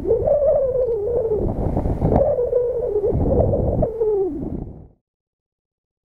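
Wind buffeting the microphone of a head-mounted camera high on a radio tower, with a wavering whistle that rises and falls over a rumble. The sound cuts off abruptly about five seconds in.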